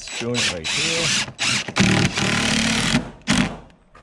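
DeWalt cordless driver driving screws into rough-sawn wooden boards: a long run of about two seconds from about a second in, then one short burst near the end. A brief hum of voice comes just before it.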